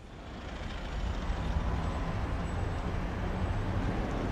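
City street traffic noise: a steady low rumble of passing vehicles that fades in over the first second.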